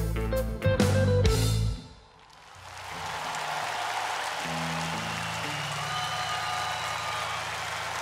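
Live rock band playing the closing chords of a song with hard drum hits, cutting off abruptly about two seconds in. Audience applause then swells and carries on steadily, with a low note held underneath.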